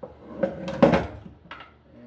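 Sheet-metal light fixture housing clanking and rattling as it is handled and tipped up onto its edge on a wooden table. The loudest clank comes just under a second in, followed by a lighter click.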